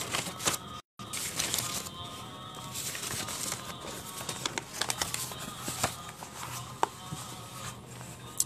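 Paper rustling and crinkling as a large sheet of ruled practice paper is handled and unrolled, with scattered clicks and knocks from handling, over faint music. The sound cuts out completely for a moment about a second in.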